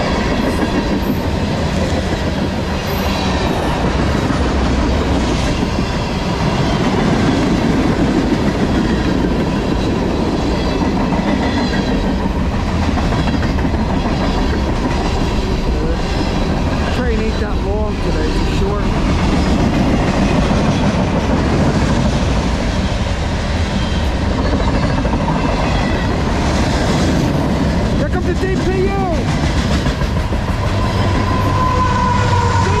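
Freight cars of a CSX manifest train (tank cars, boxcars, lumber flatcars) rolling past on steel wheels: a loud, steady rumble with clickety-clack from the rail joints. Brief wavering squeals, typical of wheel flanges on rail, come about halfway through and again near the end.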